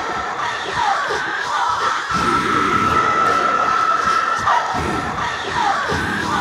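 Experimental electronic music: a steady high tone that drops out and comes back about two seconds in, short falling pitch glides, and a dense noisy wash underneath.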